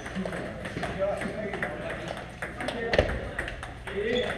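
Table tennis balls clicking off paddles and tables in irregular rallies at several tables, with one louder knock about three seconds in, over a background of voices.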